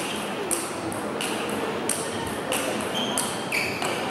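Table tennis rally: the ball clicks off the players' bats and bounces on the table in quick alternation, a sharp high ping about every half second.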